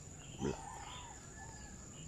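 A steady high-pitched insect drone, typical of crickets, with one short pitched call about half a second in.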